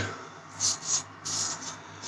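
Double-edge safety razor with a Treet blade scraping through lathered stubble in a few short strokes, on an across-the-grain second pass.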